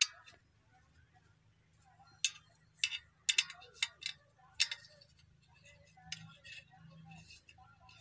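Sharp metallic clicks and clinks at an irregular pace, bunched in the middle: a spanner working the bolts of an Eicher tractor's clutch pressure plate as it is unbolted from the flywheel.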